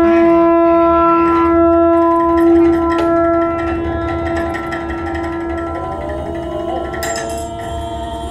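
Clarinet holding one long, steady note through the whole stretch, with a second tone sliding upward beside it about six to seven seconds in, over a low steady drone.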